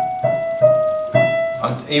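Roland digital piano played with the right hand: a slow phrase of about four single notes, each struck and held before the next, with a man's voice coming in near the end.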